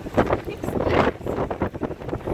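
Wind buffeting the microphone over the rush of heavy surf breaking on rocks, the level swelling and dropping in gusts.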